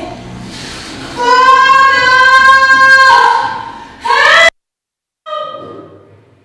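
A child's high singing voice holds one long steady note for about two seconds, then sings a short rising note that cuts off abruptly into a moment of dead silence before another note begins.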